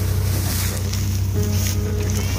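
A farm tractor's engine running steadily as it hauls a loaded trailer, with wind buffeting the microphone.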